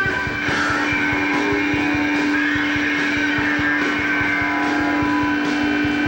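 Live rock band playing an instrumental passage: drums under one long held note, with other instrument parts above it.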